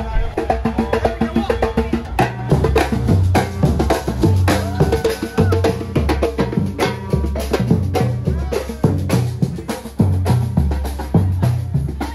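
A Brazilian-style street percussion band drumming a fast, steady groove. Large surdo bass drums alternate between two low pitches under a dense rattle of snare drums.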